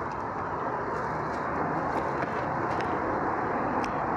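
Steady rush of city street traffic, cars passing on the road alongside.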